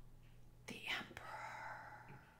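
Faint whispering: a soft breathy voice sound starts a little past halfway into the first second and trails into a quiet murmur.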